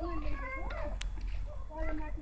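A high-pitched young child's voice making short babbling sounds that rise and fall in pitch, over a steady low rumble, with one sharp click about a second in.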